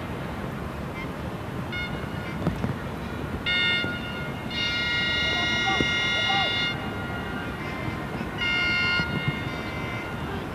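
Horns blown by spectators in a football stadium crowd. There are short toots, then a steady blast of about two seconds, then another short blast near the end, over constant stadium background noise.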